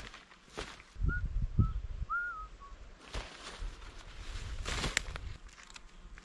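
Footsteps and rustling on the forest floor, with a few short high whistled notes, a little falling in pitch, between about one and three seconds in.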